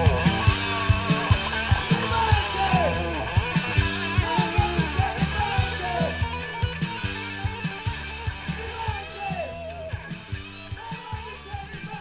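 Hard rock band recording, with drums, bass and a guitar playing bending, sliding lead notes, fading out steadily as the track ends.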